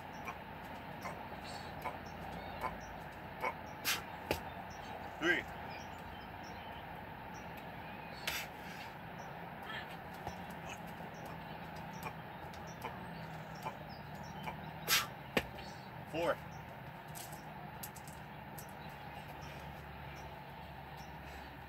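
A person doing burpees on a concrete patio, with scattered sharp taps of hands and shoes on the slab over steady outdoor background noise. Two short calls stand out, about five seconds in and again about sixteen seconds in.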